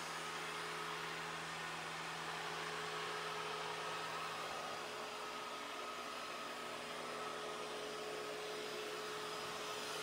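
Ecovacs Deebot T20 Omni robot vacuum-mop running while it vacuums and mops: a steady, even whir of its motors with a low hum beneath it.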